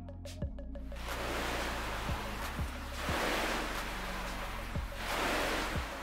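Background electronic music: a steady bass line with kick drums, overlaid from about a second in by a rushing wash of noise that swells twice and fades.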